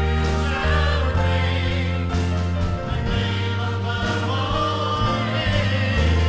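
Church choir with a male lead singer singing a worship chorus, backed by sustained instrumental chords over a deep, held bass line.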